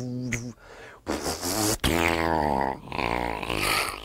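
Cartoon-style vocal sound effects made with a man's voice and mouth. A pitched buzzing tone stops after about half a second; then comes a loud, rushing hiss over a voiced drone, broken by one sharp click, with a slowly falling whistle-like tone near the end.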